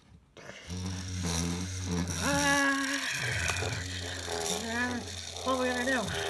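Electronic robot toy playing its built-in sound effects: a steady low electronic hum starting about a second in, with synthetic robotic voice sounds above it that hold a pitch and then slide up or down.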